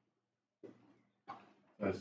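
Quiet room with two brief, faint noises about three quarters of a second apart, then a man starts speaking near the end.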